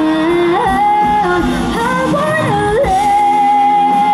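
Live band music with a woman singing lead: the vocal melody slides between notes, then settles into one long held note from about three seconds in, over guitars and drums.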